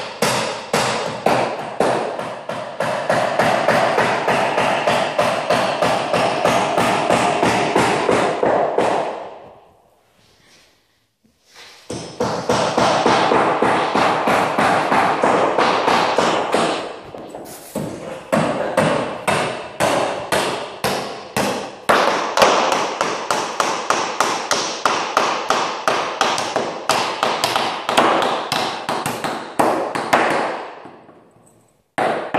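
Hammer blows driving nails into lumber as a built-up wooden beam is assembled, a steady run of about three strikes a second, ringing in a metal-walled barn. The hammering stops a little before the 10-second mark and starts again about two seconds later.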